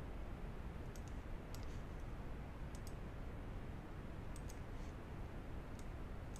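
Computer mouse clicks, light and sharp, several coming in quick pairs, scattered over a few seconds, over a steady low room hum.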